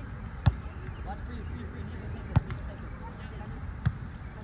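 A volleyball being struck by players' arms and hands during a beach volleyball rally: three sharp slaps, about half a second in, about two and a half seconds in and just before the end.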